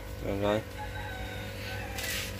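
A bird calling faintly in the distance over a steady low hum, after one short spoken word.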